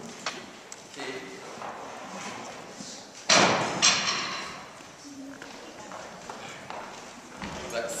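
Children's chatter with scattered clicks and knocks as band instruments and music stands are handled on a stage. A little past three seconds in come two loud knocks about half a second apart, then the chatter and small clicks go on.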